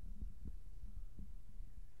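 Several muffled low thumps over a low rumble picked up by the microphone.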